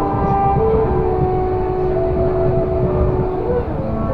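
Tokyo Disney Resort Line monorail car running along its track, a steady low rumble. Long held tones of background music sit above it and change pitch now and then.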